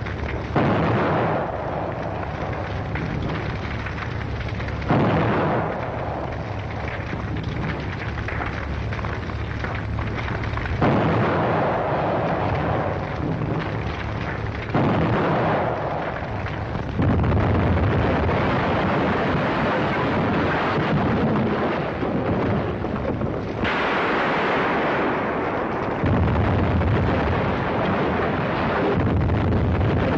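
Old film soundtrack of a series of heavy explosions, a new blast every few seconds, about seven in all, over a continuous rumble.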